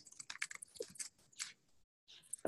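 Faint computer keyboard keystrokes, a quick run of light clicks as a terminal command is typed out and entered, stopping about a second and a half in.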